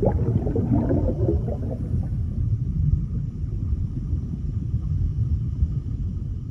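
Underwater sound effect: a deep, steady rumble, with bubbling over it for the first two seconds or so.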